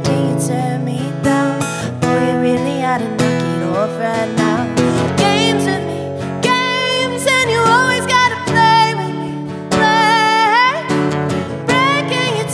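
A woman singing live to her own strummed acoustic guitar, some of her held notes wavering.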